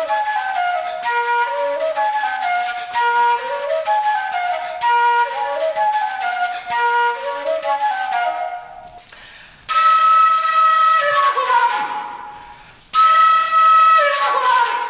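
Fula (Peul) transverse flute played solo. It plays quick, repeated falling runs, then after about eight seconds two long high held notes, each sliding down at its end.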